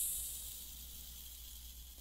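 Tail of a shimmering transition sound effect on the editing card, fading out over the first moments into a faint steady hiss.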